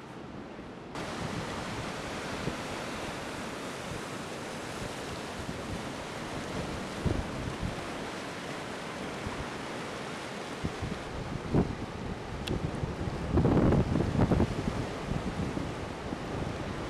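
Ocean surf: a steady wash of breaking waves, louder from about a second in, with wind buffeting the microphone in strong gusts near the end.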